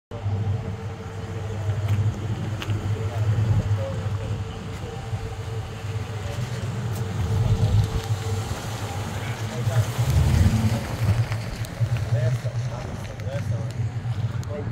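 A car engine running with a steady, uneven low rumble, with faint voices in the background.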